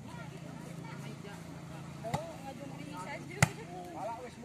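A volleyball struck twice by players' hands, two sharp slaps a little over a second apart, the second louder, amid the chatter of players and onlookers.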